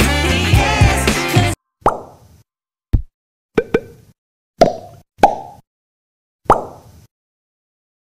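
Background pop music with a sung melody that cuts off abruptly about a second and a half in. It is followed by about six short pop sound effects, unevenly spaced, each with a brief ringing tail, as the elements of an animated logo outro pop onto the screen.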